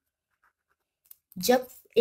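Pen writing on notebook paper, a few faint short strokes in an otherwise near-silent pause. A woman's voice starts about a second and a half in.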